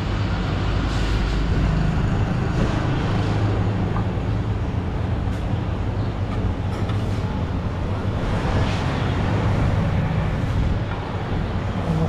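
Steady low rumble of busy street background noise, traffic-like, with a few faint clinks.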